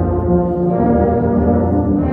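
A massed ensemble of more than 130 tubas and sousaphones playing together in slow, sustained low brass chords.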